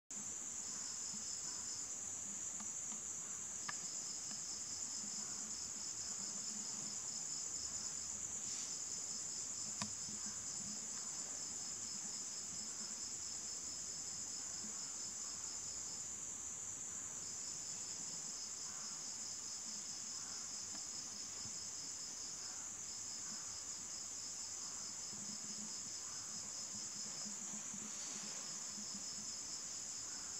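Insects chirping: a steady high trill, joined by a second pulsing trill that breaks off and resumes every few seconds. A couple of faint clicks sound in the first ten seconds.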